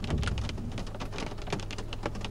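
Rain hitting the car's windshield and roof, heard from inside the car as a rapid, irregular patter of separate drop ticks over a steady low rumble.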